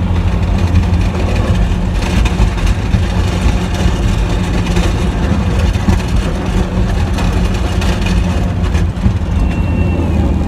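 Plow truck's engine running steadily under load, heard from inside the cab, while the plow blade pushes snow along the pavement with a rough, crackling scrape from about two seconds in.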